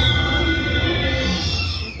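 Recorded roar of a walk-around velociraptor dinosaur costume: one long, high screech over a deep rumble, sliding down in pitch as it ends.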